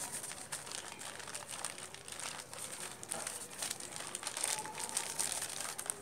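Thin black plastic nursery pot crinkling as it is squeezed and pressed by hand to loosen the snapdragon's root ball and slide it out for transplanting.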